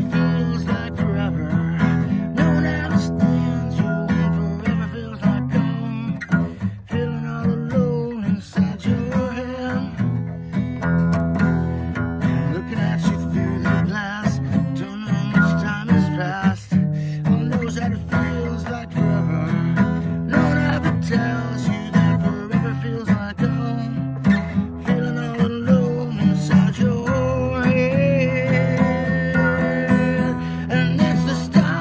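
Acoustic guitar strummed steadily, chord after chord, with a man's voice singing along in places.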